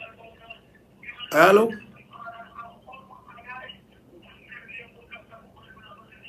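Only speech: a faint voice talking over a phone-quality line, with one short, louder word from a voice close to the microphone about a second and a half in.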